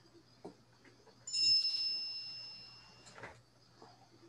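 A single high-pitched chime, like a notification ding, struck about a second in and fading away over about a second and a half, over a faint low hum and a few small clicks.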